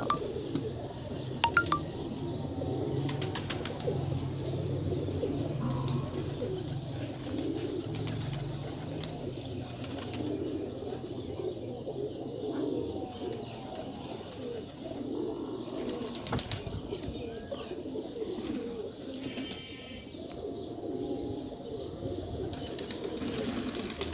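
Domestic pigeons cooing: a continuous low, warbling coo, with a few faint clicks.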